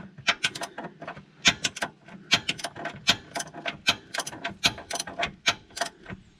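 Socket ratchet wrench clicking in short, irregular runs of quick clicks as it is swung back and forth to loosen the front differential fill plug on a Can-Am Defender.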